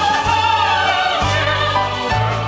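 Opera singers and chorus singing with orchestral accompaniment. A high voice with wide vibrato leads over a bass line that steps from note to note.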